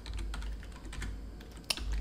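Typing on a computer keyboard: a sparse run of key clicks as a word is typed, with one sharper click near the end.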